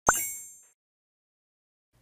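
Logo-reveal sound effect: a single sudden pop with a bright, high chime that rings and fades away within about half a second.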